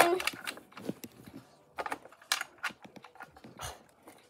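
Scattered light clicks and ticks at irregular intervals, some close together.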